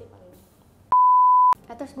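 A single pure, steady electronic beep lasting just over half a second, cutting in and out abruptly: a censor bleep dubbed over a spoken word in conversation.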